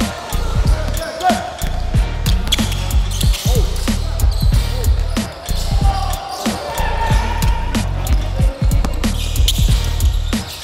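Music with a heavy bass beat, over a basketball bouncing on a hardwood gym floor with repeated sharp knocks.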